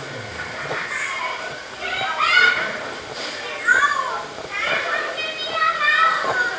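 Children's high voices calling out and shouting to one another, loudest about two, three and a half and five seconds in, with no words made out.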